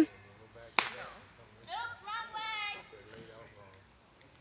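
A single sharp knock about a second in: a croquet mallet striking a ball.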